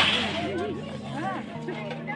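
Chatter of many voices at a crowded gathering over a steady low hum, with one sharp crack at the very start.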